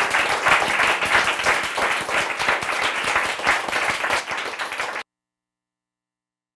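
An audience applauding, many hands clapping steadily; the sound cuts off suddenly about five seconds in.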